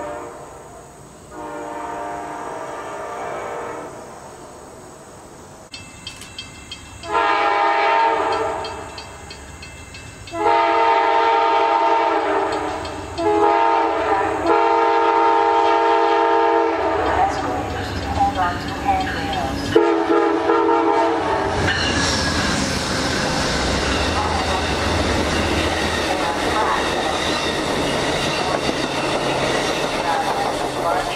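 Amtrak Vermonter passenger train led by a GE P42DC diesel locomotive, sounding its horn as it approaches: a faint blast, then louder ones getting closer, one of them short. From about 22 seconds in the train passes close by with a loud, steady rumble of wheels on rail.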